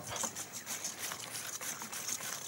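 Ricotta and yoghurt being mixed by hand in a stainless steel bowl: a run of soft, irregular scrapes and taps of a utensil working through the cheese against the metal.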